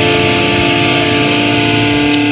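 Live band's electric guitar holding one long sustained chord through the PA, ringing steadily without a change of note.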